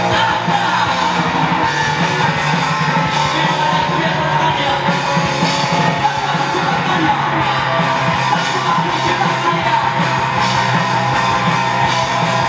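A rock band playing live, with electric guitar and drums and a singer's voice over them, loud and unbroken throughout.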